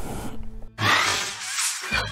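Short intro music sting for a logo card. A low steady hum gives way, about a second in, to a loud whooshing swell that cuts off just before the end.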